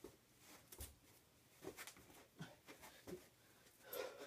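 Near silence in a small room, broken by a few faint soft thuds and rustles from a person doing burpees on a carpeted floor.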